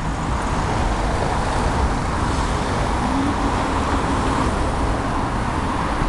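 City street traffic: cars driving past on the road, a steady rush of tyres and engines, with one engine's tone coming up about halfway through.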